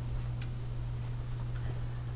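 Steady low hum of room tone with one faint tick about half a second in.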